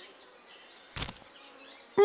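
Faint insect buzzing from the cartoon long-horned beetle, with one short, sharp sound effect about a second in.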